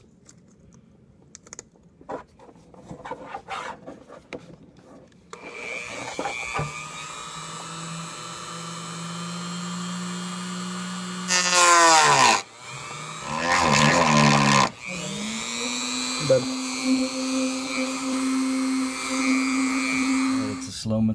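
Dremel-type rotary tool with a thin EZ Lock cut-off wheel, cutting an opening through the plastic of a motorcycle Tour-Pak. After a few quiet clicks, the motor starts about five seconds in and runs with a steady whine, gets much louder and rougher twice near the middle as the wheel bites into the plastic, its pitch dipping briefly between, then runs steadily again.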